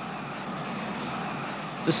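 Four-engined jet airliner flying low overhead: a steady rushing engine noise that grows slightly louder.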